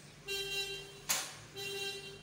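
A vehicle horn honks twice at one steady pitch, a longer honk and then a shorter one, with a single sharp snap between them about a second in.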